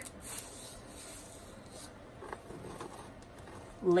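Soft rustling and rubbing of paper and lace as hands handle a handmade junk journal, clearest in the first two seconds and fainter after.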